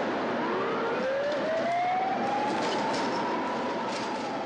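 An emergency vehicle siren rising slowly in pitch over steady street traffic noise.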